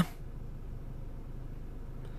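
Vauxhall Astra H's 1.4 petrol engine idling steadily, a low hum heard from inside the cabin.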